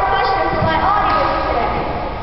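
A boy's raised voice, echoing in a large gymnasium.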